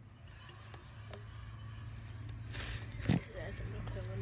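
Plastic bottles being handled: a brief rustle and then a single knock about three seconds in, as a bottle is set down, over a steady low hum.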